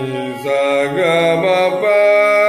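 Slow alaap in raga Bhimpalasi sung on an open vowel to harmonium accompaniment. The voice holds notes and steps to new ones, with a curving glide about a second in.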